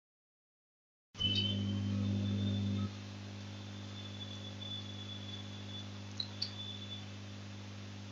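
A low, steady electrical hum with a faint high whine over it. It starts after about a second of dead silence and drops to a lower level about three seconds in.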